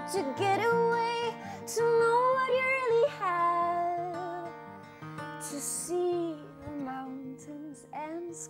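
A woman singing live to her own acoustic guitar, holding long notes that slide from pitch to pitch, with the guitar steady underneath. It grows quieter in the second half.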